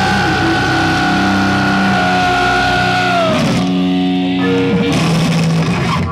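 Live heavy metal band playing loud: distorted guitars, bass and drums. A long held high note slides down about three seconds in, then lower notes ring on.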